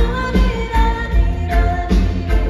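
A woman singing into a microphone over a live band, with a steady kick-drum beat about twice a second, heard from within the crowd.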